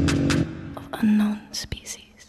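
A whispered voice over an electronic soundtrack; a loud low hum drops away about half a second in, and the sound thins out and fades toward the end.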